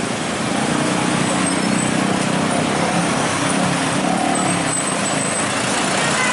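Busy road traffic: buses, cars and motorbikes running past close by in a steady roar. A heavy vehicle's engine drones low and loud through the first few seconds.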